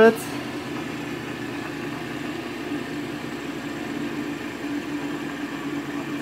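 Arduino-controlled Adams-style pulsed electric motor running with a steady hum, its drive pulses delayed so it has slowed to about 1800 RPM.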